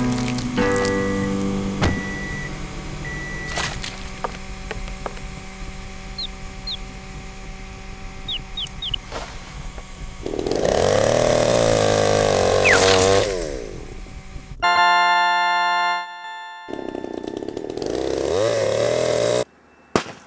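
Chainsaw engine revving, with its pitch rising and falling, in two loud stretches of about three seconds each: one about ten seconds in and one near the end, which cuts off abruptly. Music plays under and between them.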